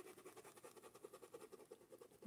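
Faint, quick brush strokes on fabric stretched in an embroidery hoop, about eight a second, as a paintbrush works and blends paint into the cloth.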